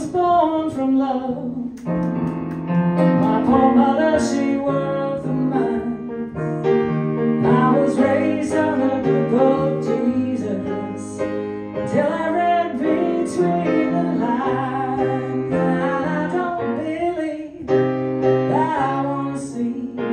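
A woman singing to her own grand piano accompaniment, the piano playing chords in a steady rhythm under the vocal line.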